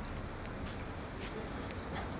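Urban street ambience: a steady low rumble of light city traffic, with faint footsteps on pavement about twice a second.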